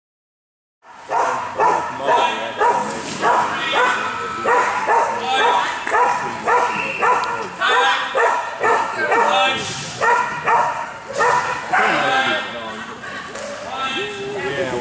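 A dog barking repeatedly at a steady pace of about two to three barks a second, starting about a second in.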